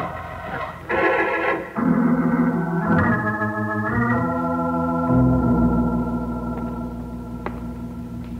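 Organ music bridge: a few chords, each held for about a second, then one long held chord that slowly fades.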